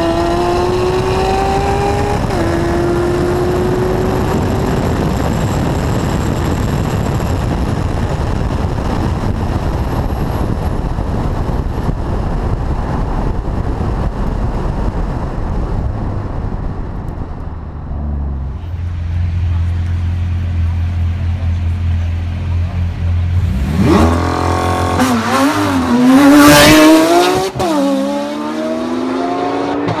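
Tuned Audi RS6 accelerating hard down a drag strip, its engine pitch climbing and dropping once at an upshift about two seconds in, then buried under rushing wind and road noise at speed. A low, steady drone follows as it slows. Near the end, cars pass loudly with revving engines.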